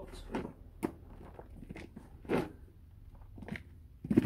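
Hands scooping and dropping crumbly container compost into a plant pot around a rose's roots: a few short, scattered crunches and crackles.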